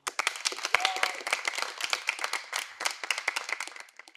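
Applause: many people clapping, starting suddenly after a song and dying away near the end.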